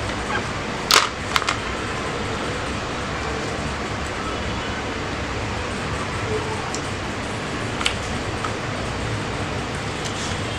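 Set chocolate pieces being pushed out of a flexed silicone mould, giving two sharp clicks about a second in and one more near the eight-second mark as pieces drop onto the plate, over a steady hiss of room noise.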